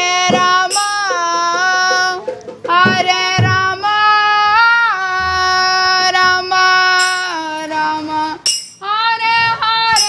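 A song sung by a single high voice in long held, gliding notes, with a few low drum beats underneath; the voice breaks off briefly about two seconds in and again near the end.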